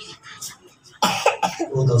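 A loud cough close to the microphone about a second in, in two quick bursts, followed by a man's voice starting up again.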